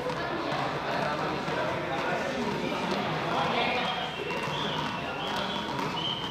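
Indistinct chatter of several voices echoing in a sports hall, with a few light knocks of juggling balls being caught or dropped.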